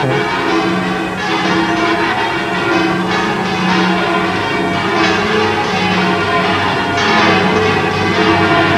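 The 25 bells of the Giralda bell tower ringing all at once, swinging, in a dense, continuous peal of overlapping strikes.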